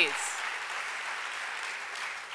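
Audience applause in a large hall, dying down near the end.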